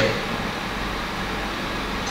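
Steady background hiss: even room noise with no distinct events.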